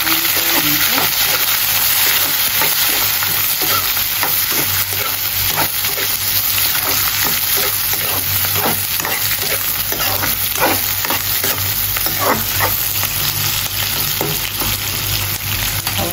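Sliced onions and bay leaves sizzling in hot oil in a kadai, stirred with a metal ladle that scrapes and clinks against the pan now and then, most often around the middle.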